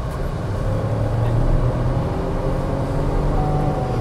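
MG Astor's engine heard from inside the cabin, pulling under acceleration, its note slowly climbing, over a steady road hum.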